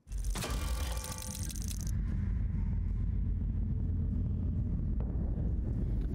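TV drama soundtrack: rapid mechanical clicking and ticking, like a clockwork apparatus, for about two seconds over a deep, steady drone that then carries on alone.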